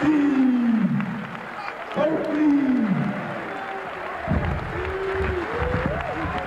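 A man's voice through a microphone giving three long, drawn-out calls that fall in pitch, about two seconds apart, over crowd applause.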